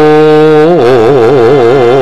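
Javanese gamelan music accompanying a wayang kulit performance, led by one loud long-held note. The note is steady at first, then swings in a wide, fast vibrato from about a second in.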